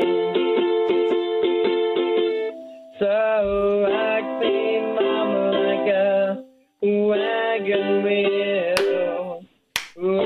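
A man singing to his own strummed ukulele, a long song in a minor key, heard over a telephone line that cuts the highs. The sound drops out briefly three times: about two and a half seconds in, at about six and a half seconds, and just before the end.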